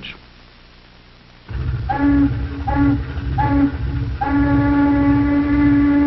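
Steam whistle of a harbour boat sounding several short blasts and then one long, steady blast, over a low rumble.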